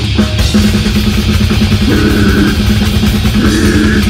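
Live metal band playing loud: electric guitars and bass over fast, dense drumming with a rapid run of bass-drum hits. Higher guitar parts come in about halfway through and again near the end.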